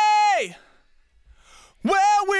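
A man singing, close-miked in a vocal booth and compressed and EQ'd: a high held note that slides down in pitch and dies away about half a second in, then a new note sliding up into place near the end.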